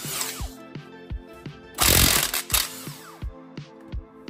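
Cordless impact wrench run in a short burst of under a second about two seconds in, spinning out a dog bone mount bolt, with a few clicks of the socket and bolt around it and background music under it.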